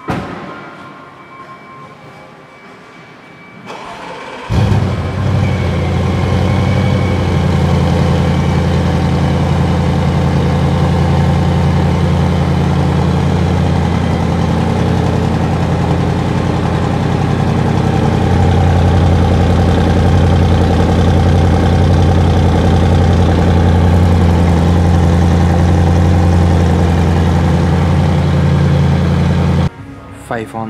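2016 Audi RS7's twin-turbo 4.0-litre V8 being started: it catches about four seconds in with a sudden loud burst, then settles into a steady idle heard at the exhaust tips. A short knock comes right at the start.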